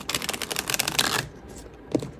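A deck of tarot cards being shuffled by hand: a rapid run of card flicks lasting about a second, then a single soft tap near the end as cards land on the tray.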